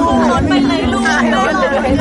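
Crowd chatter: many voices talking and calling out at once over a steady low hum.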